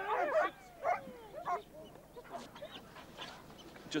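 A white German Shepherd yelping and whining in a run of short, arching cries during the first second and a half, fainter after. A man calls "come on" over it.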